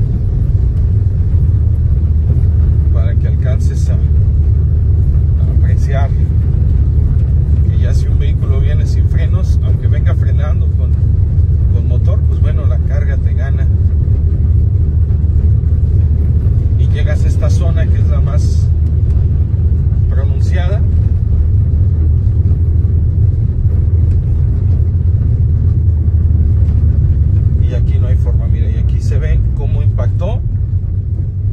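Steady low rumble of a car driving on a paved road, heard from inside the cabin. Short snatches of indistinct voice come through every few seconds.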